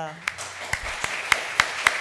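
Audience applauding, starting a moment in, with a few sharp individual claps standing out from the general clapping.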